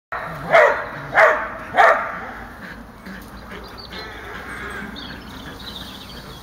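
Belgian Shepherd dog barking: three loud barks about two-thirds of a second apart in the first two seconds.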